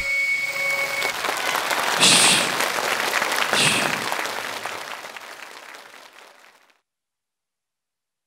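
Studio audience applauding and cheering once the music stops, with two louder bursts of cheering about two and three and a half seconds in. The applause then fades away over the next few seconds. A faint held note from the backing track trails off in the first second.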